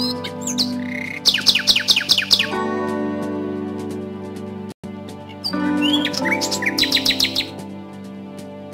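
Soft instrumental background music of held notes with bird chirps over it: a quick run of rapid chirps about a second in, and another near the end. The sound cuts out for an instant just before the halfway point.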